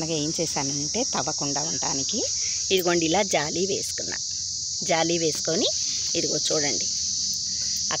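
Steady high-pitched chirring of an insect chorus, crickets, sounding without a break, with a person's voice talking in short stretches over it.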